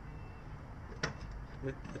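Low steady background noise with a single sharp click about a second in.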